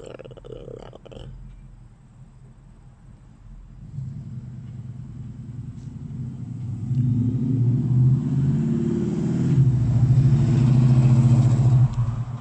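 A motor vehicle's engine, building from about four seconds in and growing steadily louder, then cutting off suddenly near the end.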